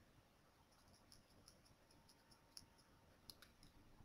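Near silence, broken only by a few faint, short clicks.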